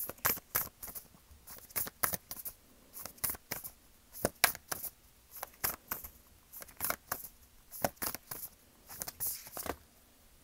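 Tarot cards being shuffled and handled by hand: a run of quick, irregular card clicks and taps, several a second.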